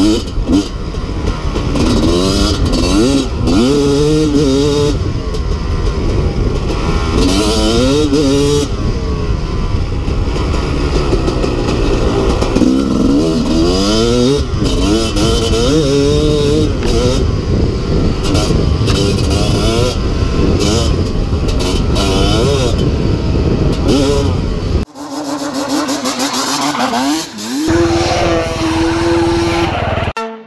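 Single-cylinder two-stroke engine of a 1996 Kawasaki KX250 dirt bike with an FMF Gnarly pipe, revving up and dropping back again and again as it is ridden hard through the gears, with wind and trail noise on the helmet microphone. About five seconds before the end the sound cuts to a quieter, steadier engine note.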